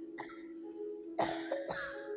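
Grand piano notes sustaining softly while someone coughs, a small cough just after the start and two loud coughs about a second in and near the end.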